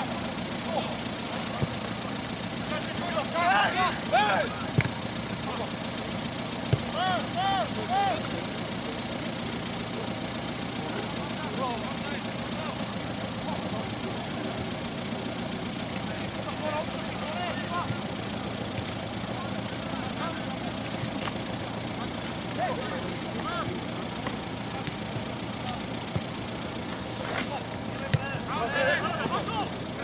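Shouts of players carrying across an outdoor football pitch, about three seconds in, about seven seconds in and again near the end, with a few short sharp knocks of the ball being kicked. A steady low hum runs underneath.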